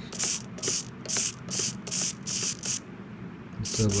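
A 9-gram micro servo whirring in short bursts, about two or three a second, as its horn swings back and forth with the transmitter stick. The bursts pause briefly near the end, then start again. The servo answering the stick shows that the FlySky transmitter's link through the All-Link module to the RZ6 receiver is working.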